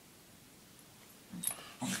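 Quiet room, then about one and a half seconds in a short sound from a small dog waking and stirring in her bed. A woman's voice begins right at the end.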